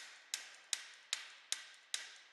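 A hammer tapping the bottom of a TorqueExtender pole tool in a steady, even rhythm, about two and a half light strikes a second, each ringing briefly. It is driving a 3/8-inch wedge anchor up into a drilled hole in the concrete ceiling until it bottoms out.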